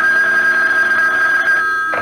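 Telephone bell ringing, a radio-drama sound effect: one steady ring that stops near the end.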